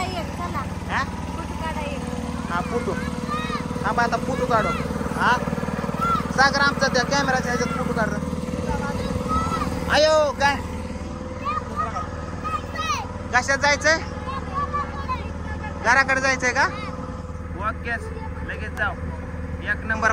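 A boat engine running steadily with a low drone, with people talking over it.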